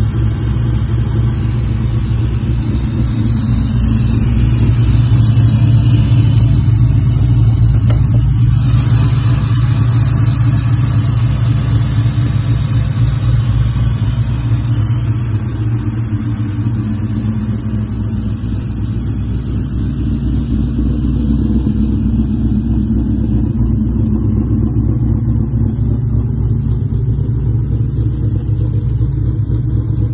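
Modified Ford Mustang Mach 1's swapped-in supercharged 4.6-litre DOHC Cobra V8, cammed, idling loud and steady through its exhaust. It swells slightly a few seconds in, then settles back.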